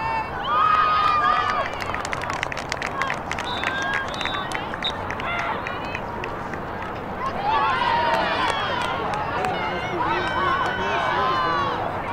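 Players and sideline voices shouting and calling during lacrosse play, loudest in the second half, with a quick run of sharp clicks in the first few seconds.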